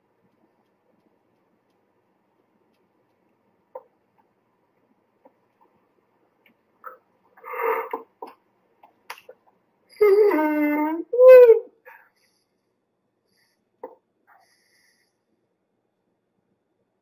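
A short wordless vocal sound: a drawn-out tone of about a second followed by a shorter one. A few faint clicks come before and after it.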